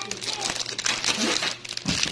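Thin plastic packaging crinkling and rustling as a clear plastic bag and bubble wrap are handled, with many small crackles.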